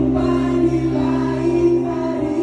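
Several voices singing together into microphones over amplified live music, a loud group sing-along.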